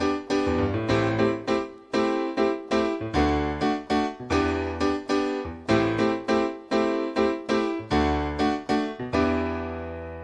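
Piano playing a steady run of repeated chords, with bass notes in the left hand under chords in the right. The last chord is held and left to ring near the end.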